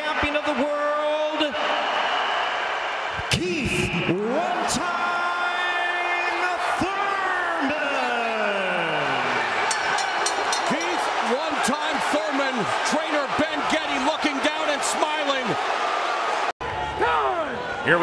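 A ring announcer's amplified voice, drawn out in long stretched calls, announces the winner over loud arena noise with sharp claps and knocks. The sound cuts off suddenly near the end.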